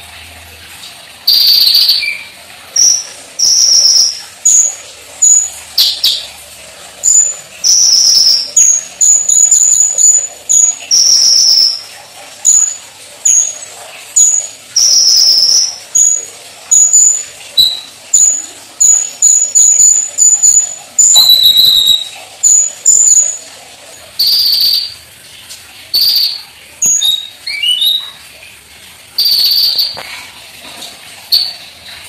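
A caged kolibri ninja (Van Hasselt's sunbird) singing loudly: a long, varied run of short, high, sharp notes in quick succession, with a few quick rising whistles near the end.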